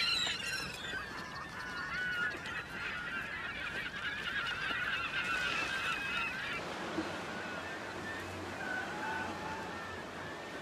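A flock of gulls calling, many overlapping squawks at once, thinning to a few scattered calls after about six and a half seconds.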